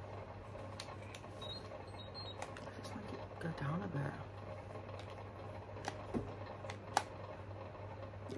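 Quiet room with a steady low hum and a few soft, sharp clicks from handling a hair straightener while straightening hair; the sharpest click comes near the end.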